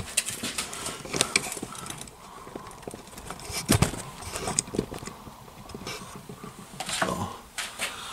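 Rustling and clicking of a plastic blister pack of ignition parts being handled, with scattered small clicks and one louder knock about four seconds in.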